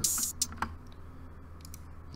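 An open hi-hat from the trap drum pattern sounds briefly at the start, then playback stops and a few faint computer keyboard clicks follow.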